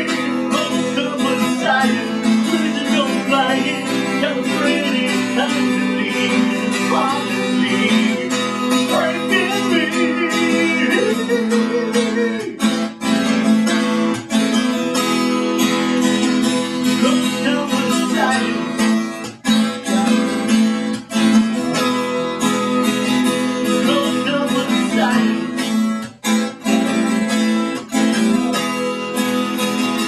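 Several acoustic guitars strummed together, playing a song.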